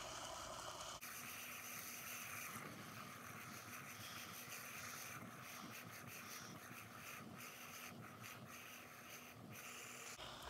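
Near silence: a faint, steady hiss of room tone with no distinct events.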